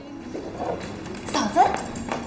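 A woman's voice calling out "嫂子" ("sister-in-law") about a second and a half in, its pitch rising as she calls.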